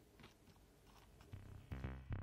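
A few faint clicks of metal tweezers nudging small metal jigs in a plastic lid. Electronic music with a beat fades in about one and a half seconds in.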